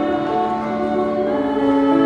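Mixed choir of young men and women singing a hymn, holding long, steady notes.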